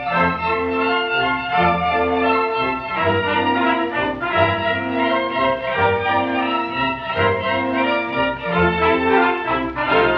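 Instrumental orchestral introduction to a Spanish revista stage song: a small theatre orchestra plays a tune in held notes over a recurring bass line. It is an old recording with a muffled top end.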